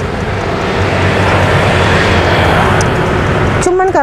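A motor vehicle going by: a steady rush of engine and road noise that builds toward the middle and cuts off suddenly near the end, where a voice begins.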